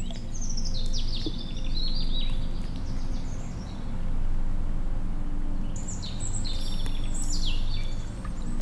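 Bird calls: two runs of short high chirps stepping downward in pitch, the first in the opening seconds and the second about six seconds in, over a steady low drone.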